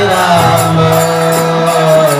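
Devotional chanting by a group of voices holding one long note, over a steady beat of small metal percussion striking about three times a second.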